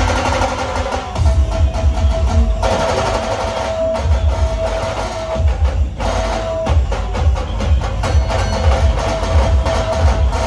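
Loud dhol-tasha style drum music played through a DJ truck's speaker stacks: fast, dense drum strokes over heavy rhythmic bass pulses, with a held melodic tone through much of it.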